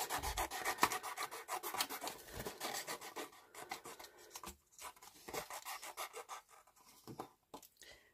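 Scissors cutting through patterned paper: a quick run of short crisp snips that thins out and stops near the end.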